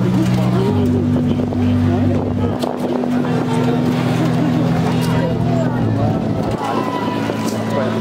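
Ambient soundscape played from the giant lion puppet: low sustained drone chords that shift to new notes every couple of seconds, with people's voices over them.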